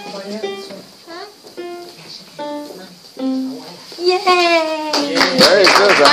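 Casio electronic keyboard played one note at a time, a slow simple melody picked out by a beginning child player. About five seconds in, applause and cheering break out as the tune ends.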